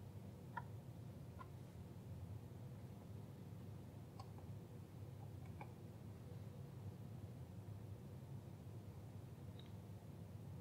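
A handful of faint, irregular clicks as the digital microscope's focus is turned by hand, over a steady low hum.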